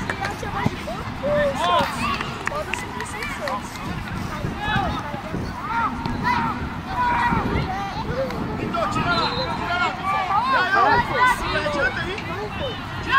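Young players' voices calling and shouting on the pitch: many short high calls overlapping one another, with a steady outdoor background behind them.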